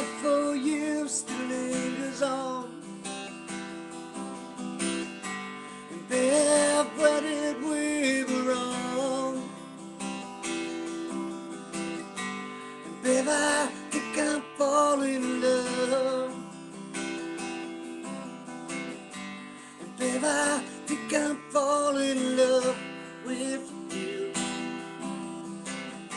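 Acoustic guitar strummed as a steady slow accompaniment, swelling in three louder phrases about six, thirteen and twenty seconds in.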